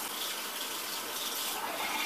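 Warm water running steadily into a bowl.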